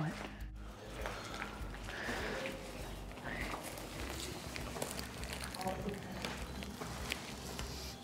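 Soft footsteps in dry soil and leaf litter with faint hushed voices, over a low steady hum.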